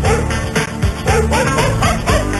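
Background music with a steady, fast beat.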